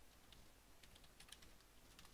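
Faint computer keyboard typing: a quick run of light keystroke clicks as a line of code is typed and Enter is pressed.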